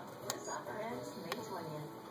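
Indistinct voices with two sharp clicks about a second apart.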